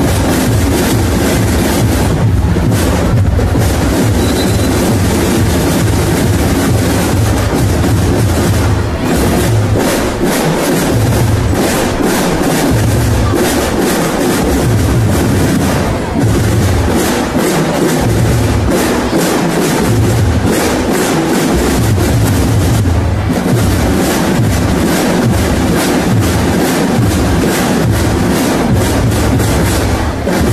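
School drum and lyre band playing: dense, loud drumming, with a bass drum pulsing under rapid snare strokes and the band's bell lyres.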